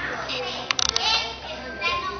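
Children's voices, high-pitched and unworded, with a quick run of four or five sharp clicks a little under a second in.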